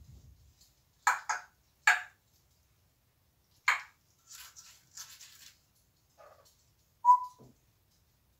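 African grey parrot calling from its cage: a few short, sharp squawks in the first half, then breathy, hissing sounds, and one short whistle about seven seconds in.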